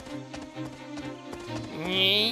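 Cartoon background music with steady held tones and light, evenly spaced taps. Near the end a rising, voice-like glide begins.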